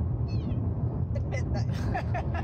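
A cat meows once, a short falling cry about half a second in, inside a moving car's cabin over the steady low rumble of road noise.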